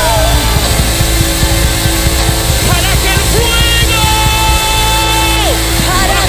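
Live church worship band (drums, electric guitars, bass and keyboard) playing loud, up-tempo Pentecostal coro music, with a long held note starting about four seconds in that slides down near the end.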